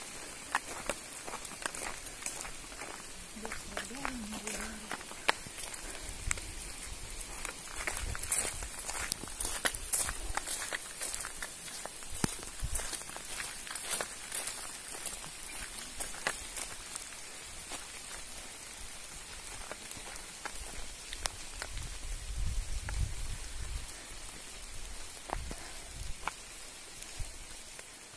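Steady rain falling, with many individual drops ticking close by over an even hiss. A few low rumbles come and go around the middle and near the end.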